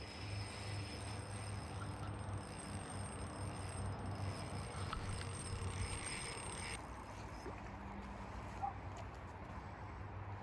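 Steady rushing of river water, an even noise with no distinct events.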